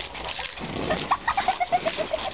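A child laughing in a quick run of short, high notes, over the steady hiss and patter of water spraying onto a trampoline mat.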